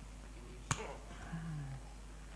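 A single sharp click from a microphone being handled at the lectern, with a short ring after it, followed about half a second later by a brief low hum.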